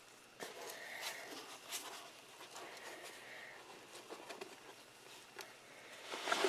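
Gloved hand rustling and turning over the shredded bedding in a plastic worm bin, soft irregular crackles as the damp strips are pushed aside.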